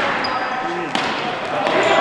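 Ball hockey sticks and ball knocking on a gymnasium floor during play: two sharp knocks about a second apart, with players' voices behind.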